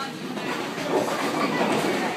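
Bowling balls rolling in a bowling alley, a steady rumble that swells about half a second in and grows louder toward the end.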